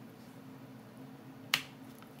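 A single sharp click about one and a half seconds in, as a Sabrent Rocket 4 Plus NVMe SSD is pushed and pressed down into a laptop's M.2 slot, over faint steady background hum.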